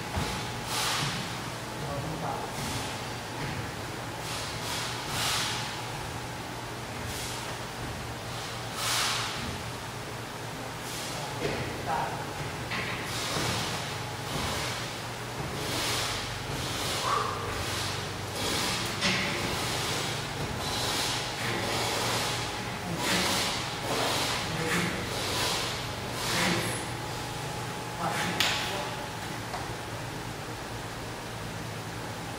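An athlete's repeated hard breaths and exhalations, roughly one a second, while doing pull-up reps on a gym rig, over a steady low hum.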